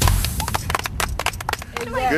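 Background music cuts off, followed by a run of irregular clicks and knocks, then a person's voice starts near the end.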